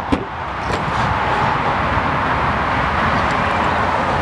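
Ford Mondeo wagon's power tailgate opening from the key fob: a sharp click as the latch releases, then a steady rushing whir as the tailgate lifts.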